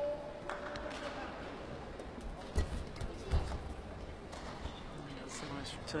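Badminton racket strikes on the shuttlecock during a rally, heard as scattered sharp clicks about a second apart, with two heavier thuds near the middle, over a steady murmur of the arena crowd.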